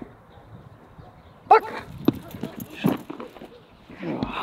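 German Shepherd barking at a protection-training helper. Three loud barks, the first and loudest about a second and a half in.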